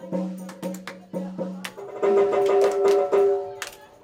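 Electric guitar playing a few loose single notes, a short low note repeated several times and then a longer higher note, amid scattered sharp clicks and taps.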